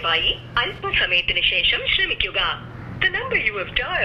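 Speech only: a person talking in Malayalam.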